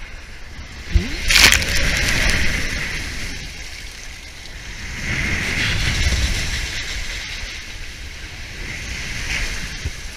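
Inflatable ring tube sliding down a waterslide, with water rushing and splashing under it. A knock about a second in is followed by a loud burst of noise, and the rushing swells again around the middle.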